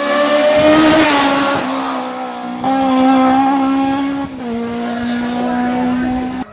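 Rally car at full throttle as it approaches and passes, its engine note holding at high revs with small drops in pitch about a second and a half in and again past four seconds.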